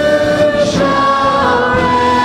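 Church worship band and congregation singing a hymn together, voices holding long notes.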